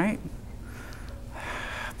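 A man's voice ending on the word "right?", then a pause with room tone and an audible intake of breath in the last half-second before he speaks again.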